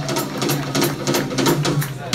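Live rock-and-roll band playing between vocal lines: the drummer keeps a quick even beat on the cymbals, about four strikes a second, over a steady low bass note.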